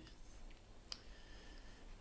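Near silence: room tone with a faint click about a second in.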